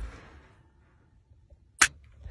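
Near silence, broken near the end by one very short, sharp cry of 'Ah!'.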